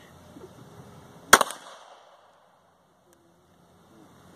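A single shot from a Defenzia M09 less-lethal pistol firing a rubber impact round, about a third of the way in, with a short ringing tail. Soon after, the sound drops out almost completely for over a second.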